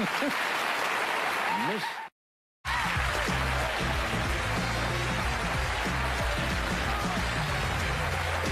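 Studio audience applause with some laughter. About two seconds in it cuts out for half a second of dead silence, then music with a steady bass line comes in under the continuing applause.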